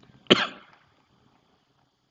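A single short human cough about a third of a second in, then quiet.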